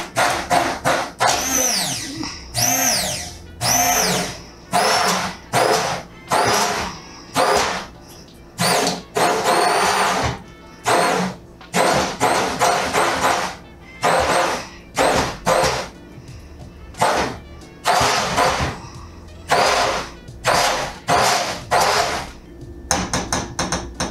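Keylitos handheld immersion blender pulsed in short bursts in a pot of thick shrimp bisque, about one burst a second, its motor whine rising and falling with each pulse as it chops the shrimp.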